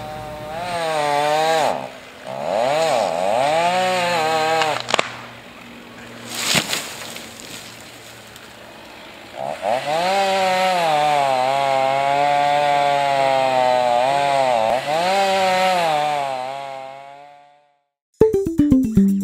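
Gas chainsaw revving up and down as it cuts trees, its pitch rising and falling in long loud passages with a quieter stretch in the middle. There are a couple of sharp knocks in the quiet stretch, and the saw fades out near the end.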